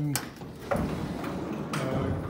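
A metal sliding barn door being pulled open: a click, then about a second of rolling, scraping noise.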